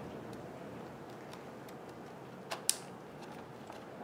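Small plastic clicks and scrapes as a netbook's battery latches are slid and the battery pack is pulled out of its bay, with two sharper clicks about two and a half seconds in.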